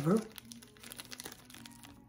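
Clear plastic packaging bag crinkling as it is handled, a run of small rapid crackles.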